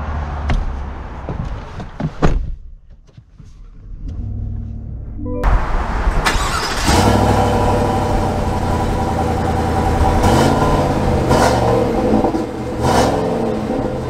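GMC Sierra 1500's 5.3-litre V8 starting about five seconds in, flaring briefly, then settling into a steady idle.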